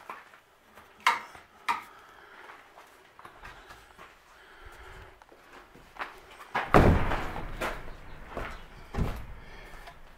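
A door being handled and pushed shut: a couple of sharp clicks about a second in, then a loud thump with some rattling about seven seconds in, and another knock near the end.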